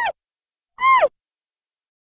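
Logo sound effect: two short, voice-like calls that each drop in pitch, a brief one at the start and a slightly longer one about a second in.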